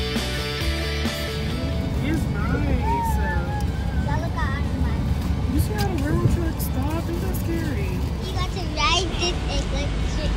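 Music fading out in the first couple of seconds, then unclear voices over the steady low rumble of a moving car heard from inside the cabin.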